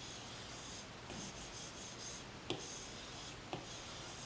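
Apple Pencil stroking across an iPad Pro's glass screen: faint, scratchy swishes in about four strokes of a second or less, with a few light taps as the plastic tip touches down.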